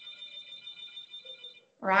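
A faint, high ringing made of several steady tones whose level flutters rapidly; it stops a little over one and a half seconds in, just before a voice begins.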